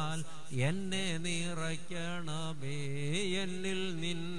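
A man's voice singing a slow, chant-like devotional melody into a microphone, holding long notes that waver and glide between pitches.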